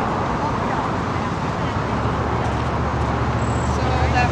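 Steady outdoor traffic noise from motor vehicles, with a low rumble that builds in the second half.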